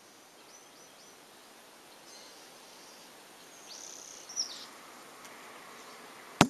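Quiet outdoor background with a few faint, high chirps, the clearest about four seconds in.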